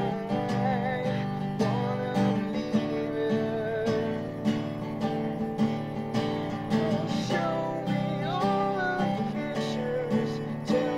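Acoustic guitar being strummed in a steady rhythm, chords ringing between strokes.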